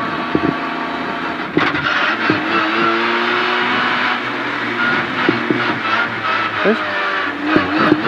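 Citroën C2 R2 Max rally car's four-cylinder engine heard from inside the cabin, running steadily at low revs as the car rolls slowly. The note rises slightly a couple of seconds in, with a few short knocks and rattles from the cockpit.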